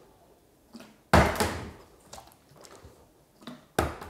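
Plastic water bottle slammed down on a kitchen countertop: a loud knock about a second in and another sharp knock near the end, with light taps between as it settles. This is a try at making supercooled water freeze instantly by whacking the bottle.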